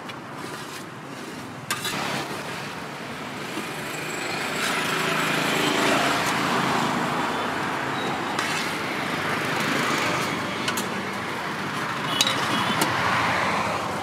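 Road traffic passing close by, a steady noise that swells as vehicles go past, about five seconds in and again near ten seconds. A few short clicks of the steel serving spoon against the aluminium pot and plate.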